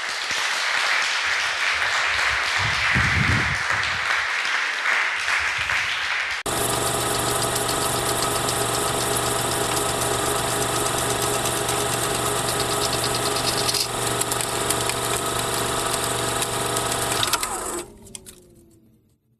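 Audience applauding for about six seconds, then a sudden switch to a steady mechanical hum with rapid ticking, in the manner of a film projector running, which cuts off shortly before the end.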